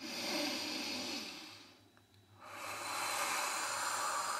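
A woman breathing audibly into the microphone in slow, even breaths. One breath lasts about a second and a half, then after a short pause a longer breath begins about two and a half seconds in.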